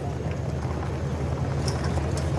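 Steady low rumble of outdoor broadcast background noise between lines of golf commentary, with an even hiss above it.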